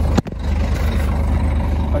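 Truck's diesel engine idling steadily with a low, even pulse. A sharp knock about a quarter of a second in comes from the phone being handled.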